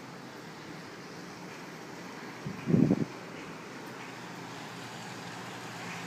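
Steady low outdoor background noise with a faint hum, and a short voiced murmur from a man about two and a half seconds in.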